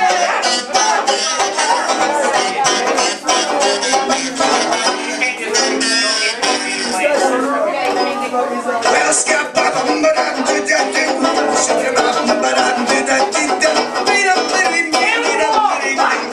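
Live acoustic band music: plucked strings with a wavering lead melody on top, an instrumental break between sung verses of an old-time jazz number.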